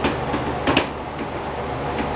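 Clicks and knocks of a T8 LED tube being handled and seated in the lamp sockets of a fluorescent fixture: one at the start and a quick pair a little under a second in, over a steady background hum.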